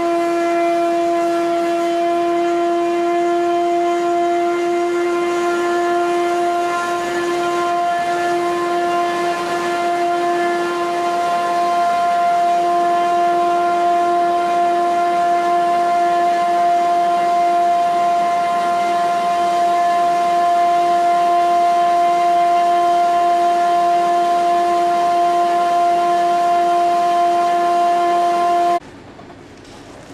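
Corrugator single facer running at 126 metres a minute, giving off a loud, steady whine with a stack of overtones above it. The whine cuts off abruptly near the end, leaving a much quieter background.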